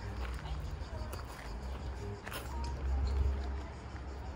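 Indistinct voices of people talking quietly over a steady low rumble.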